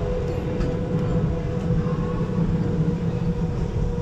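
Go-kart driving around a track: a steady low rumble of motor and tyres, with a constant hum running through it.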